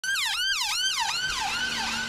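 UK emergency vehicle siren sounding a fast wail that falls and rises just under three times a second, growing fainter in the second half.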